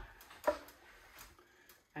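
A single sharp knock about half a second in, then a fainter tap: a ladle knocking against the bread machine pan or the glass jar and funnel while marmalade is ladled into a canning jar.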